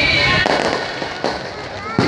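Firecrackers going off over a crowd: a short crackle about half a second in, then two sharp bangs, one just past a second and one at the very end. The crowd's voices run underneath.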